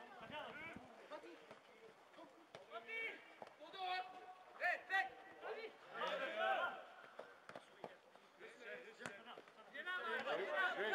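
Footballers' voices calling and shouting across the pitch during open play, with a couple of sharp thuds of the ball being kicked near the middle.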